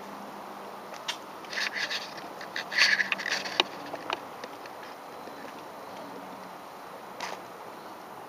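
Camera handling noise: a cluster of sharp clicks and rattles about one and a half to four seconds in, loudest near three seconds, then a single click near the end, over a steady outdoor hiss.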